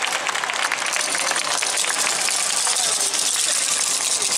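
Audience applauding steadily, mixed with crowd voices, once the dance music has ended.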